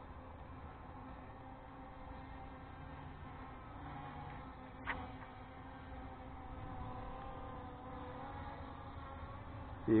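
Aosenma GPS quadcopter drone hovering: a faint, steady buzz from its motors and propellers, with a single click about halfway through.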